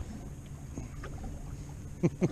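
Steady low rumble of wind and water around a small boat on open water, with a few faint ticks.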